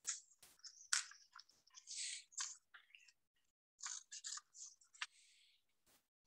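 Sheet of construction paper being picked up and handled, giving faint, scattered rustles and crackles with a couple of sharp clicks.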